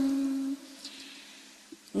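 A voice chanting Vietnamese Buddhist verse holds the last note of a line, which fades out about half a second in. A faint low hum lingers through the short pause, and the next chanted line begins at the very end.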